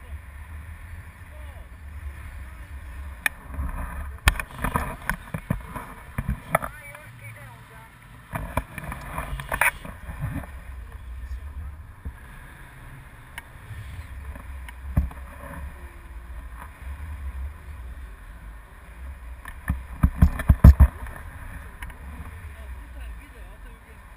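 Wind on the camera microphone of a tandem paraglider in flight: a steady low rumble, with louder gusty buffeting from about four to ten seconds in and again around twenty seconds in.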